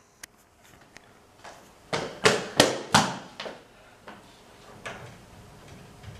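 Metal locker being handled: a quick run of loud knocks and clunks about two seconds in, then a few fainter knocks.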